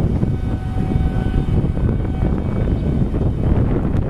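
Wind buffeting the microphone of a camera carried on a moving bicycle: a loud, continuous low rumble without pauses.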